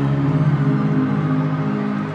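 Live concert music from the arena sound system: a slow intro of sustained low chords that shift a couple of times.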